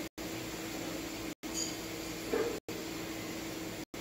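Steady room hum with a faint constant tone, cut by brief silent dropouts about every second and a quarter. A short faint sound comes about two and a half seconds in.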